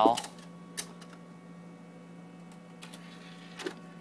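A few short faint clicks over a low steady hum.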